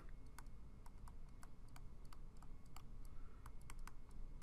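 Stylus tapping on a tablet screen while handwriting: a run of light, irregular clicks, about five a second.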